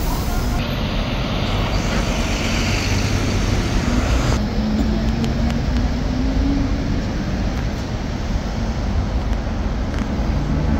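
City street traffic: cars, taxis and buses passing in a steady rumble of engines and tyres, with one engine note rising a little about halfway through.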